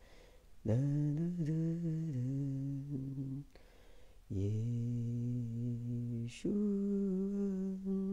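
A man humming a slow, wordless tune on 'la', in three long held phrases with short pauses between.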